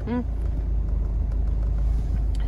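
Motorhome engine and drivetrain rumbling steadily, heard from inside the cab as the vehicle rolls slowly across a car park; a low, even rumble with no change in pitch.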